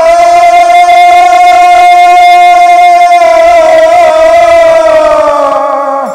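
Bengali devotional kirtan: singing holds one long note over a harmonium, with khol drums beating softly underneath; the note sags slightly in pitch near the end.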